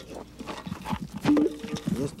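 Hands patting down loose soil and dirt clods on a freshly filled grave, a run of soft knocks and scuffs. A short vocal sound comes in about a second and a half in and is the loudest thing heard.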